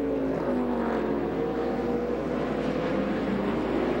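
NASCAR Cup car's V8 engine, its pitch falling steadily as the driver lifts off the throttle and brakes into a corner, the revs dropping from about 8,500 to 5,100 rpm.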